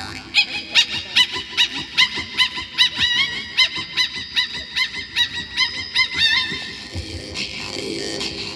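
Woman's voice in Northern (Yukaghir) throat singing, giving a steady run of short, high calls that rise and fall, about two and a half a second. The calls stop about six and a half seconds in.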